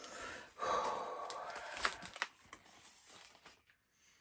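A man blowing out a long, tense breath through pursed lips, with a couple of sharp clicks near its end. Then faint rustling of paper packaging being handled.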